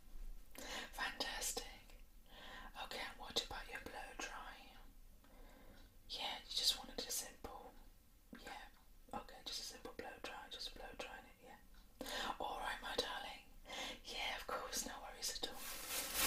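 A woman whispering in short breathy phrases with brief pauses between them.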